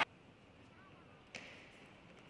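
Faint hall background, then a single sharp click of a table tennis ball being struck a little over a second in, as the point starts.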